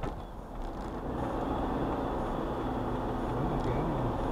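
Car driving, heard from inside the cabin: a steady mix of engine and tyre-on-road noise that grows a little louder about a second in as the car pulls out of a roundabout.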